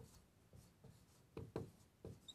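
Faint strokes of a felt-tip marker writing on a whiteboard: a few short scratchy strokes, the clearest about one and a half seconds in.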